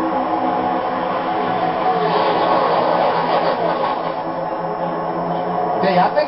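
A pack of NASCAR stock cars' V8 engines running together at a steady high pitch, heard through a television speaker, with a few pitch glides near the middle as cars sweep past.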